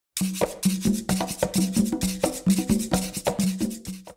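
Percussion-driven background music: a quick, even run of sharp strikes over a steady low note, starting and stopping abruptly.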